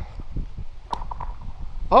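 A rock thrown onto lake ice: a sharp click about a second in with a brief ringing tone, among small ticks as stones skid and settle on the ice.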